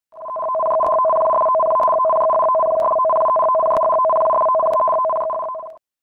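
Electronic alert tone for a tsunami warning: two steady pitches held together for about five and a half seconds, swelling in at the start and cutting off shortly before the end, with faint clicks about once a second.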